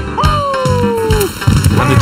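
A cartoon owl character's voice calls one long falling note. About a second and a half in, background music with a bass line starts.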